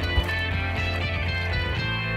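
Background music with guitar over a steady low bass note.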